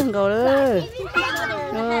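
People talking and calling out, children's voices among them, with one drawn-out rising-and-falling exclamation in the first second.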